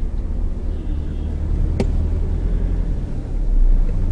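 Steady low engine and road rumble heard from inside a moving car, with a single sharp click about two seconds in. The rumble grows a little louder near the end.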